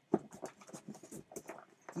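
A stack of old paper comics being lifted out of a cardboard box: irregular rustling of paper with light taps and knocks against the cardboard.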